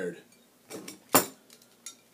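A few sharp glass-and-metal clinks as a glass beer bottle is handled, probably in opening it. The loudest clink comes about a second in, with a fainter one before it and one after.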